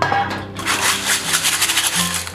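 Small river snails being scrubbed by hand in a stainless steel colander with salt and starch, their shells grinding and clattering against each other and the metal in a dense, rapid scraping rattle that starts about half a second in. The scrubbing scours dirt off the shells.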